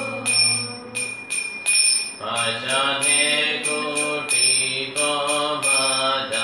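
A man chanting a devotional mantra to a sung melody, with small hand cymbals (kartals) struck in a steady beat, a few strikes a second.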